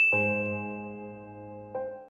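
Notification-bell ding sound effect. A high ding rings on while a lower, fuller chime strikes just after it and slowly fades, with another softer strike near the end.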